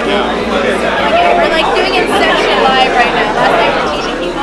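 Several people talking over one another, with general convention-hall babble behind them.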